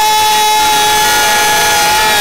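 A horn blown in the stands holding one long steady note for about two seconds, over other held notes and crowd noise.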